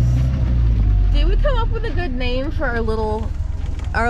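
1973 Land Rover Lightweight's engine idling with a steady low rumble that turns rougher and more uneven about a second in.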